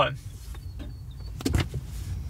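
Low steady rumble of a car cabin, with a short click about one and a half seconds in.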